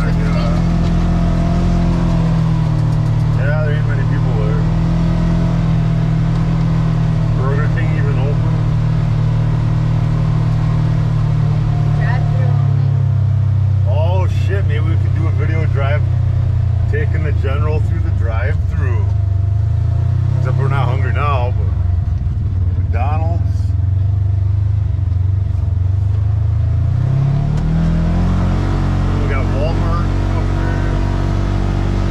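Polaris General XP 1000 side-by-side's twin-cylinder engine running steadily while driving, heard from inside the cab. Its pitch drops about twelve seconds in and climbs again near the end as it speeds up.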